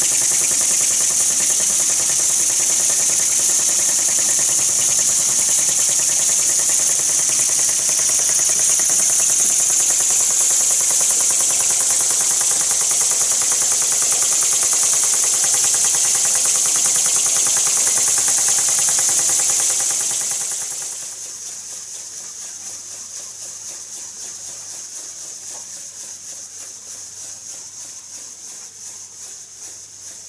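Small scratch-built oscillating-cylinder model marine steam engine running on steam: a loud, steady hiss of steam with a fast, fine beat from the engine's exhaust. About two-thirds of the way through the hiss drops sharply and the engine carries on more quietly.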